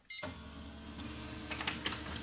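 A short beep from the keypad, then a multifunction printer-copier starting a copy: its motors come on suddenly with a steady mechanical whir, with a few sharp clicks from the mechanism a little before the end.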